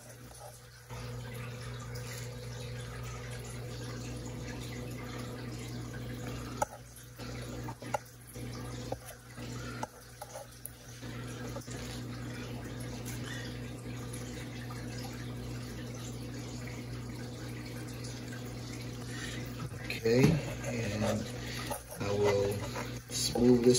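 Wet white acrylic paint being spread over a canvas with a plastic spreader: soft wet scraping with a few small clicks, most of them between about a third and a half of the way in, over a steady low hum.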